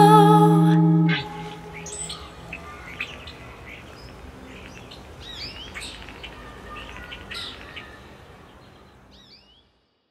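A held musical chord stops about a second in, leaving birds chirping over a faint outdoor hiss, as in a field recording. The chirps grow fainter and fade out near the end.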